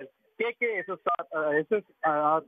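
A man's voice speaking over a telephone line, sounding thin and narrow, with a brief pause just after the start.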